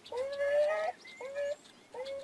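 Beaver vocalizing: one long whiny call of nearly a second, then two short ones.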